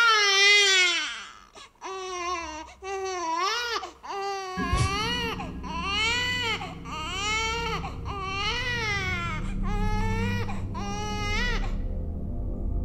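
A baby crying in a long string of wails, each rising and falling in pitch. About four and a half seconds in, a low steady drone comes in under the cries.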